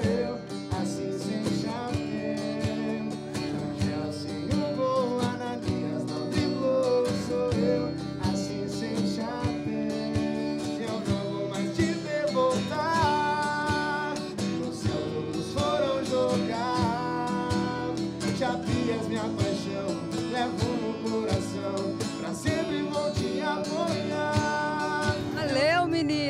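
Live acoustic duo: a man singing to a strummed acoustic guitar, with a cajón played in time.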